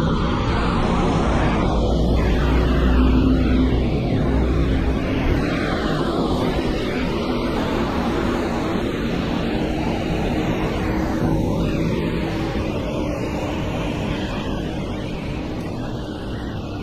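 Steady hiss of rain and tyres on a wet city street, with a deep vehicle rumble that fades after the first few seconds.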